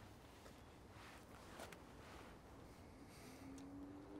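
Near silence: faint room tone with a few soft, faint noises.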